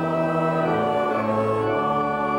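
A hymn sung by voices with organ accompaniment, in held notes that move to a new chord every half second or so.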